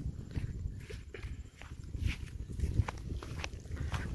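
Footsteps on a dirt path, a few light irregular steps over a low rumble.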